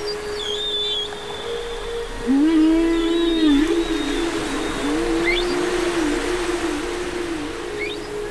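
Electronic ambient soundscape of an interactive light-and-sound installation. A steady drone and a soft wash of noise run throughout, with short rising chirps high up. About two seconds in, a lower wavering, gliding tone enters and becomes the loudest sound.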